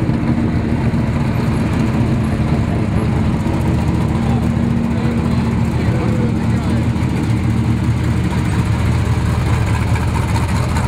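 Desert-racing trophy truck's engine idling steadily at close range as the truck creeps past.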